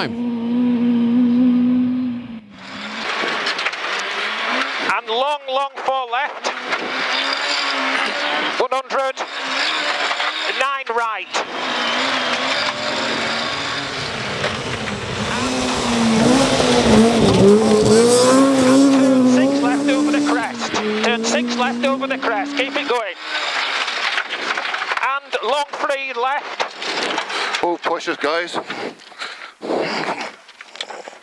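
Rear-wheel-drive rally car engines revving hard on a stage, the engine note rising and falling with throttle and gear changes. It is loudest from about 16 to 20 seconds in.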